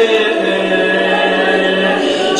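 A male voice chanting a marsiya, an Urdu elegy for Zainab, unaccompanied in long held notes. A low steady drone joins about half a second in.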